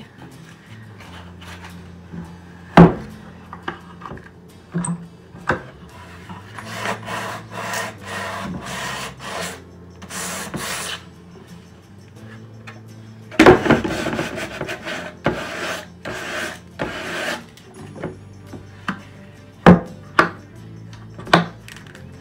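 Sandpaper rubbed in quick strokes over a painted wooden box to distress the paint, in two spells of rapid rasping strokes. Several sharp knocks of wood on wood as the box and its lid are handled, the loudest about three seconds in and near the end.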